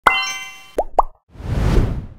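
Animated logo intro sound effects: a bright sparkling chime that rings and fades, then two quick rising pops about a second in, followed by a swelling whoosh that rises and dies away.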